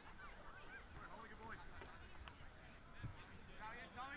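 Faint, many overlapping short arching calls from a flock of birds, with low field hubbub beneath.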